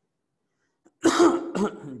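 A man coughs once, sharply and loudly, about a second in, after a moment of silence, and then starts to speak.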